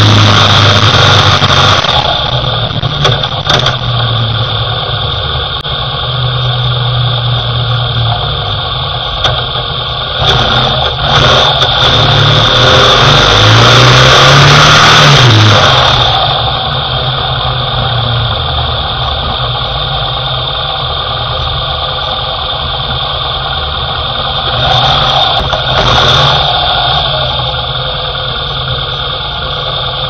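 Motorcycle engine running on the move, its pitch rising and falling once in the middle, with wind noise on the microphone. The wind noise drops away a little past the halfway mark, leaving a quieter engine note. A thin steady high whine runs underneath.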